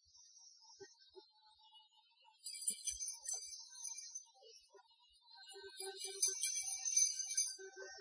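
Quiet experimental ambient instrumental music: sparse soft notes under a high, shimmering texture that swells in about two and a half seconds in and again at about six seconds.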